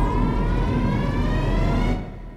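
Synthesized intro sound effect: a whine rising steadily in pitch over a heavy low rumble, building up and then cutting off at the end.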